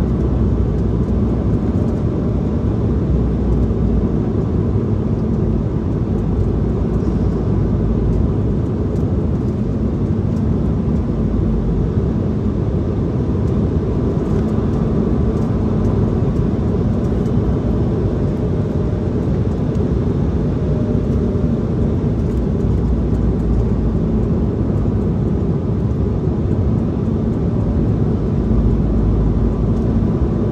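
Steady cabin noise inside an Embraer E170 jet in flight, heard from a seat over the wing: the even drone of its wing-mounted GE CF34 turbofans mixed with rushing airflow, with a faint low hum that comes and goes.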